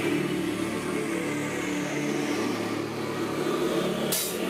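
Live hard rock band coming in all at once: distorted electric guitars and bass holding sustained chords over a wash of ringing cymbals.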